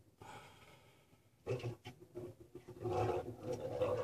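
Collared peccaries (javelinas) growling in a scuffle among the herd. The growls start faint and grow louder and nearly continuous from about a second and a half in.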